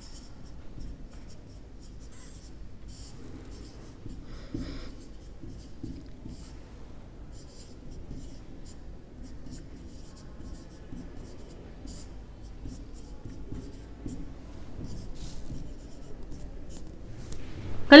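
Felt-tip marker writing on a whiteboard: faint, irregular short strokes as handwritten words are put down one after another.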